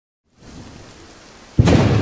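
Thunderstorm sound effect: a faint hiss of rain, then a sudden loud crack of thunder about one and a half seconds in that keeps rumbling.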